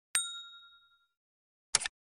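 A bell-like notification ding sound effect is struck once and rings for about a second as it fades. Near the end comes a short, sharp click, like a tap on a button.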